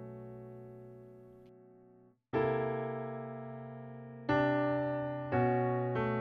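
Piano chords: a held chord fades away over about two seconds, then three new chords are struck about two seconds apart, then one second apart, each left to ring. This is the bar of F-sharp minor over a B bass with an F-sharp on top.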